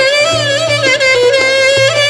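Greek traditional dance music: a lead melody with bending, ornamented notes over a steady beat in the lower accompaniment.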